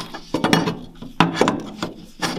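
A metal plate knocking and scraping against a car's underbody as it is held into position: a handful of sharp knocks with rubbing between them.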